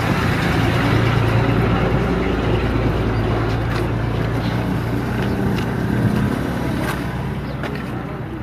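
A heavy vehicle's engine idling steadily, a constant low hum with a noisy rumble over it.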